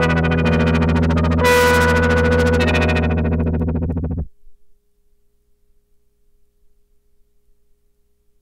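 1953 Fender Dual Pro 8 lap steel run through an ARP 2600 synthesizer clone: a sustained, droning chord texture. A new, brighter chord is struck about a second and a half in, then the sound fades and cuts off abruptly a little past four seconds. After the cut only a faint steady tone lingers.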